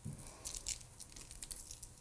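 Faint scattered crinkles and light ticks as raw salmon fillets are handled and seasoned with a shaker on parchment paper on a sheet pan.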